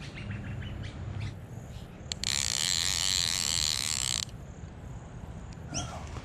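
A loud, high-pitched insect buzz lasting about two seconds. It starts about two seconds in and cuts off abruptly, with birds chirping faintly around it.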